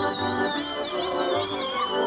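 Slovak folk dance music from a small village band, with fiddle and accordion over a pulsing bass beat. A thin, high melody line runs over the top with quick downward flicks.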